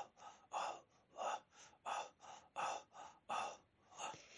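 Faint, rhythmic breathy exhalations or gasps, about three a second, with no singing.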